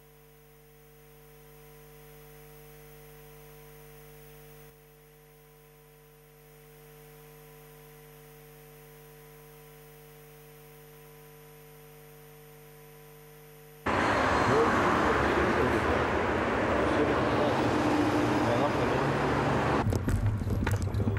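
A faint, steady hum made of several fixed tones, cut off suddenly about fourteen seconds in by loud, even outdoor noise with a vehicle-like rumble.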